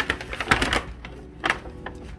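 A run of light clicks and knocks, densest about half a second in, with one sharp knock about a second and a half in: hard plastic salt shakers shifting and tapping against the inside of an enamel pot as it is handled.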